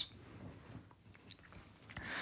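Faint room tone from a voice-over microphone during a pause in the narration, with a few small clicks and one sharper tick about halfway through.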